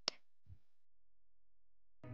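A single short, sharp click just after the start, then near silence.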